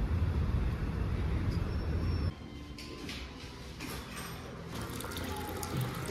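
Water swirling and splashing in a nail-salon pedicure foot basin, a quiet steady hiss with small splashes. It follows a louder low rumble that cuts off abruptly a little over two seconds in.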